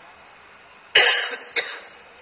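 A man coughing in a pause of his speech: one sharp, loud cough about a second in, then a softer second cough half a second later.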